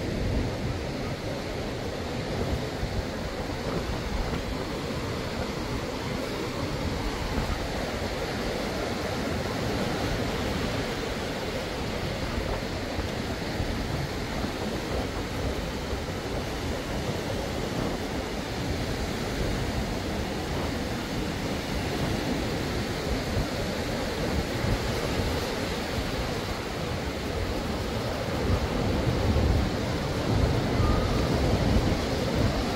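Small surf breaking and washing up a sandy beach in a steady hiss, with wind rumbling on the microphone; the surf grows a little louder near the end as the waves come closer.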